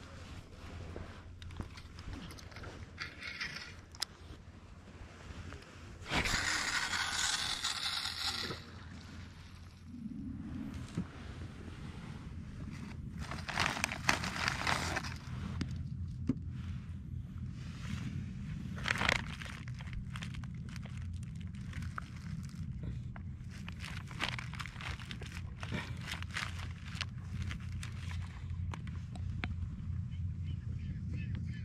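Rustling and scraping from handling fishing gear and a plastic bag of sardine bait on a dry dirt bank, with a louder rustling stretch a few seconds in. Near the end a knife cuts a sardine for bait. A low steady rumble sets in about ten seconds in.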